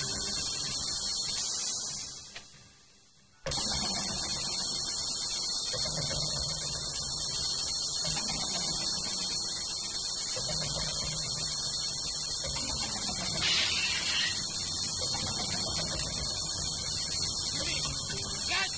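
Steady hum and hiss, dropping away briefly about two seconds in, with faint sounds beneath it.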